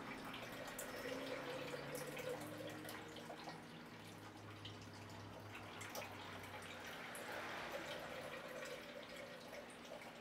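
Freshly pressed juice dripping and trickling from a manual juice press into a glass jar as the pulp bag is squeezed, faint over a low steady hum.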